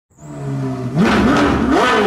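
A car engine running steadily, then revved twice, its pitch climbing about a second in and again higher near the end.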